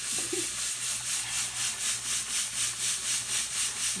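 Pot of rice and black beans boiling on the stove: a steady bubbling hiss that pulses about three times a second.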